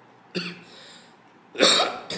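A man coughing twice: a short cough about a third of a second in, then a louder one near the end.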